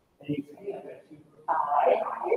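Indistinct talk of several people in a room, with a louder voice breaking in about one and a half seconds in.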